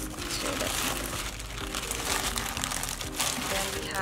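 Thin plastic bag and clear plastic sleeve crinkling irregularly as hands rummage through them, with soft background music underneath.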